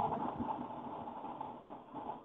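Background noise from a student's open microphone on a call: a steady, muffled hiss and rumble with nothing above the mid range. It cuts in abruptly at the start, as the microphone comes on.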